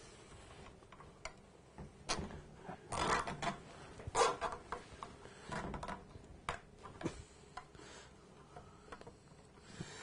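Scattered short clicks and rustles of hands handling the small fan-mounting fixings against an aluminium radiator core, loudest about three to four seconds in.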